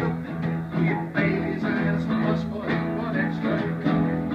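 Live ensemble music: guitar played over keyboard and cello, with steady held low notes beneath.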